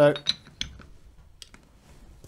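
A few light metallic clicks and taps as a soft aluminium jaw is seated on a Chick One-Lok machine vise and a T-handle key is fitted to the jaw's locking screw.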